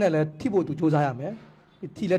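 Only speech: a man talking in a lecturing manner, with a short pause near the end.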